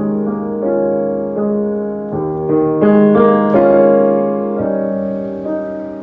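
Boston GP178 grand piano, designed by Steinway, played in slow sustained chords that ring into one another, swelling to a louder, fuller chord about three seconds in.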